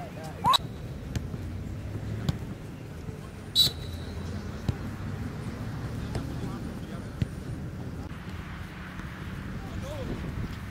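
Outdoor football-pitch ambience: a steady low background noise with players' voices, a short shout just after the start, a sharp high sound about three and a half seconds in, and a few faint knocks.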